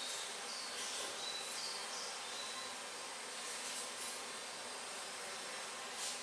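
Outdoor ambience: a steady high hiss of insects, with a few faint bird chirps in the first two seconds.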